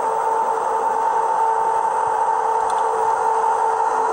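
Steady in-cabin road noise of a Ford cruising at about 67 mph on the highway, a constant rush with a steady hum running through it.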